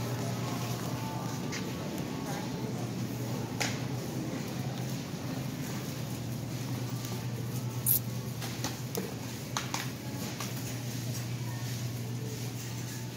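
Shopping cart rolling along a store aisle, a steady rolling rattle over a constant low hum, with a few sharp clicks and knocks from the cart and its load, the loudest near the middle.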